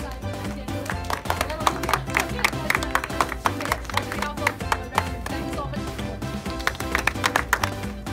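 Music over the cinema's speakers with an audience clapping; sharp claps, the loudest sounds, start about a second in and stop near the end.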